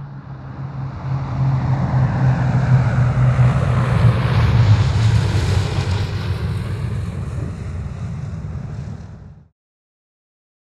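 Piston-engine propeller airplane flying past, its engine drone swelling to a peak about halfway through, then fading. The sound cuts off abruptly just before the end.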